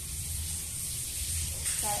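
Steady low hum and high hiss of background room noise, with a short burst of noise near the end, just before a woman starts to speak.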